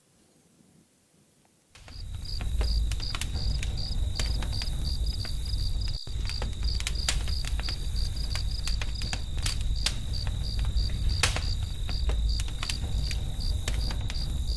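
About two seconds of near silence, then crickets chirping in a steady rhythm of about three to four chirps a second, over a low rumble and scattered clicks.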